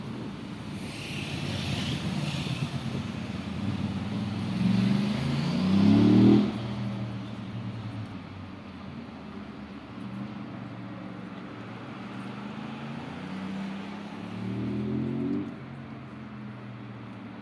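A passing motor vehicle's engine accelerating twice, its pitch rising each time: the louder run-up is about five seconds in and ends suddenly, and a weaker one comes near the end, over a steady low rumble of traffic.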